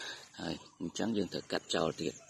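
Speech: a person talking, with short gaps between phrases; the words are not made out.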